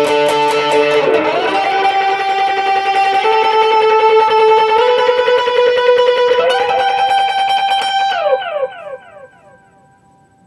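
Fender electric guitar playing a lead line of long held notes joined by upward slides, ending with a falling slide as the notes die away about eight to nine seconds in.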